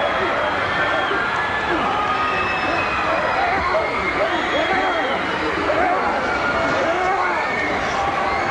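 Many voices shouting and yelling over one another with crowd noise behind, a continuous jumble with no clear words, from a scuffle among several men.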